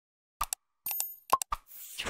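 Sound effects of an animated like-and-subscribe button: four short pops of a mouse click, in two pairs, with a brief high ringing tone between them and a faint hiss near the end.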